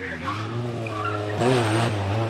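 Fiat 126p rally car's swapped-in 903 cc four-cylinder engine running under load into a corner. The note shifts in pitch and gets louder and wavers about one and a half seconds in, as the car turns.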